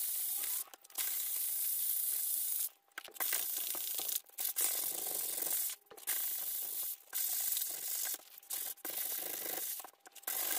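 Hand sanding of picture-frame backing board: abrasive rubbing back and forth in spells of a second or two with short pauses between, smoothing down the holes left by the removed clips.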